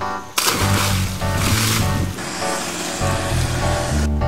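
Background music with a steady bass line, and a loud splash about half a second in as a person jumps feet-first into the sea, fading out over the next second and a half.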